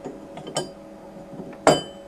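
Workpiece and holder clinking against the polishing head of a thin-section polishing machine as they are fitted into place. There is a light tap about half a second in and a louder clink with a short ring near the end.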